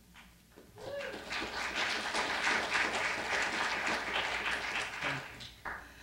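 Audience applauding. The clapping starts about a second in, holds steady, then thins out and dies away near the end.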